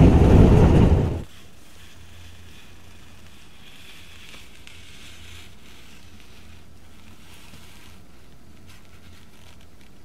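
Loud running noise inside a diesel express train, the Super Matsukaze, moving at speed. It cuts off suddenly about a second in, leaving a quiet, steady low hum of room tone.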